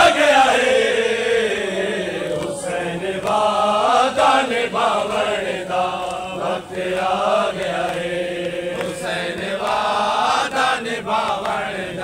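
A group of men chanting a noha, a Shia lament for Imam Hussain, together in long, drawn-out sung lines.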